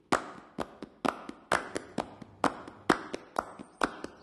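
Sharp percussive hits in a steady rhythm, about two a second, each with a short fading tail, with softer taps in between.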